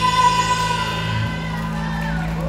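Live rock band holding one sustained chord through the PA, electric guitars ringing with no drumbeat, the higher notes thinning out as it dies away at the end of a song.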